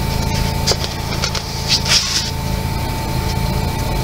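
A coloring book's smooth paper page being turned by hand: a few short paper swishes and rustles about a second and two seconds in, over a steady low hum.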